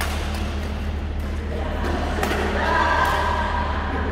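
Racket strikes on a shuttlecock over a steady low hall hum, with singing swelling up about halfway through and fading near the end.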